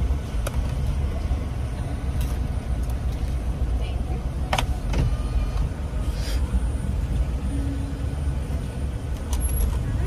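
Car engine idling, heard as a steady low rumble inside the cabin, with a few faint short clicks partway through.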